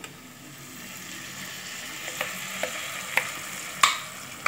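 Hot oil steadily sizzling in a pan of sautéed onions as a white ground paste is scraped in from a steel bowl, with a few light clicks of the bowl and utensil. The sharpest click comes near the end.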